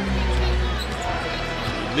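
A basketball dribbled on a hardwood court over arena crowd noise, with steady low music underneath.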